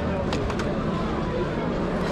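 Flea market background: indistinct voices of people over a steady bed of outdoor noise, with a few sharp clicks about a third to half a second in.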